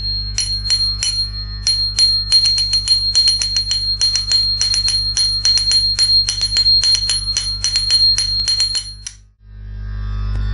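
Small metal hand cymbals (talam) struck in a quick, uneven rhythm over a low steady drone, beating time for a Bharatanatyam jathi. The sound cuts off abruptly about nine seconds in.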